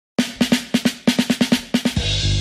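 A fast drum fill opens a music track: a quick, slightly uneven run of sharp drum strikes, about eight a second, starting after a split second of silence and leading straight into the full band.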